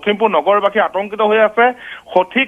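A man speaking over a telephone line, the sound cut off above about 4 kHz.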